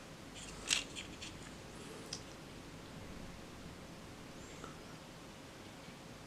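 Low room noise with a few faint, light clicks in the first two seconds, from a small plastic Hornby model open wagon being handled and turned in the fingers.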